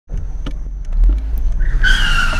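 A sedan rolling slowly past with a low rumble. About a second and a half in, a high steady squeal starts and falls slightly in pitch as the car brakes to a stop: brake squeal.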